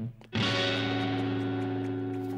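A single guitar chord struck about a third of a second in and left to ring, fading slowly: a short music sting.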